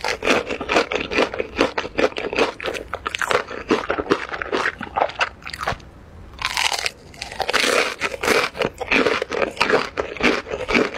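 Close-miked biting and chewing of a crunchy, breadcrumb-coated fried corn dog: a dense run of crisp crunches, a short lull about six seconds in, then a fresh bite with more crunching.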